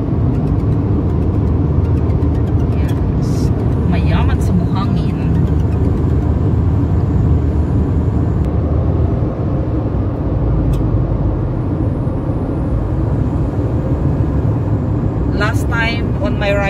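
Steady low road and engine noise inside the cabin of a car driving at speed on a highway, with a brief voice about four seconds in.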